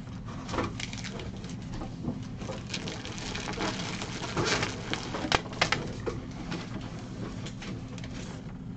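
Rustling of a plastic-bagged rug and cardboard as it is pulled out of a shipping box, with scattered clicks and taps, over a steady low hum.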